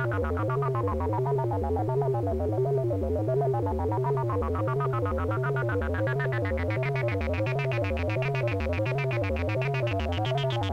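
Analogue modular synthesizer tone run through a Korg MS-20-style voltage-controlled filter whose cutoff is swept by an LFO on its CV input, giving an even wah-like wobble a little under twice a second. The sound turns darker through the middle and brighter again toward the end as the knobs are turned.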